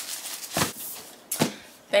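Packaging being handled: a faint paper rustle and two dull thumps less than a second apart as a gift box is moved and set down.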